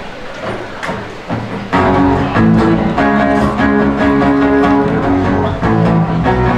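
Acoustic guitars and a bass guitar start a song together about two seconds in, playing sustained strummed chords after a short stretch of quieter room sound.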